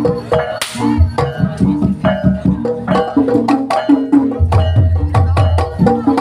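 Banyumasan ebeg gamelan music played through loudspeakers: a fast, steady run of kendang hand-drum strokes over repeating tuned-percussion notes, with a deep low tone joining in about four and a half seconds in.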